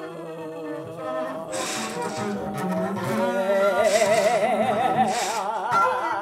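Wordless female voice singing in free improvisation over a bowed double bass; from about halfway through the voice holds a note with a wide, wavering vibrato.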